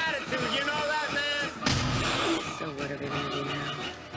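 Film soundtrack: a man's anguished, wavering cries, then a sudden loud boom about a second and a half in, followed by more voices over music.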